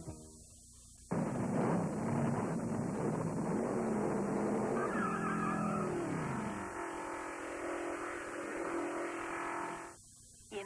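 Cartoon race-car sound effects start suddenly about a second in: an engine revving up and down with skidding, then settling into a steady held tone near the end. A faint high-pitched squeal from the worn VHS tape runs underneath.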